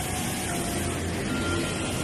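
Road traffic: vehicle engines running with a steady low rumble as traffic passes close by.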